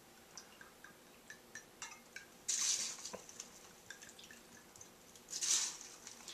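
Spiced rum poured from a bottle into a small metal jigger, with small glugs and drips, then tipped over crushed ice in a steel cocktail shaker with a short splash. This happens twice, the splashes coming about two and a half seconds in and again near the end.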